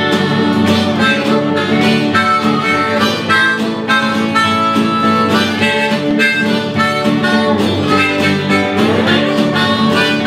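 Instrumental break in a country song: a harmonica plays the lead over a strummed acoustic guitar and a lap steel slide guitar. Near the end there is one rising slide.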